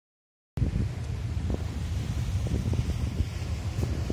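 Wind buffeting the microphone on an open beach: a low, uneven, gusting rumble that cuts in about half a second in.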